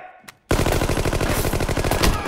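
Automatic rifle firing one long, rapid, continuous burst that starts about half a second in.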